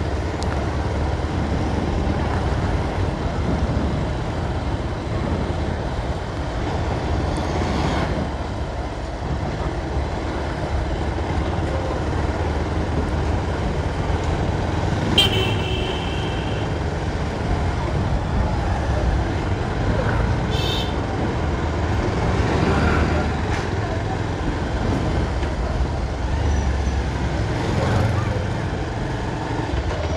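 Steady engine and road rumble of a moving vehicle with street traffic around it. A horn toots briefly about fifteen seconds in.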